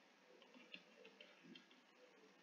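Near silence, with a few faint irregular ticks: a stylus tapping on a pen tablet during handwriting.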